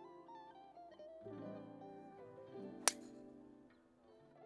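Golf driver striking a ball off the tee: a single sharp crack about three seconds in, over background music of plucked guitar.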